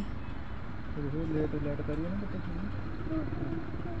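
Steady low engine rumble, with a faint voice speaking in the background from about a second in.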